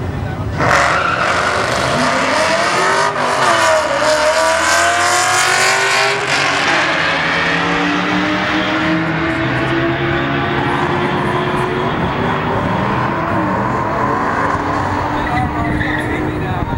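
A Ford Mustang GT V8 and a turbocharged four-cylinder Dodge Neon SRT-4 launch hard off the drag-strip start line about half a second in. Both engines rev up through the gears, the pitch climbing and dropping back at each shift, then the sound carries on more steadily and quieter as they run away down the track.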